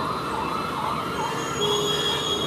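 A siren-like warbling tone from the street, wavering up and down about two to three times a second. A thin, high, steady whistle-like tone joins it about halfway through.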